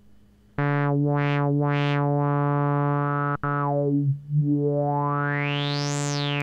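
1974 Minimoog holding one low note through its ladder filter with the resonance (Emphasis) turned up while the cutoff is swept by hand. A whistling resonant peak glides up and down through the note's harmonics, giving a 'wow, wow' sound. Near the end a slower sweep carries the peak up to a high whistle and back down.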